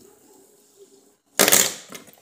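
A fidget spinner coming down onto a glass table top: one loud, short clatter about one and a half seconds in, lasting about half a second.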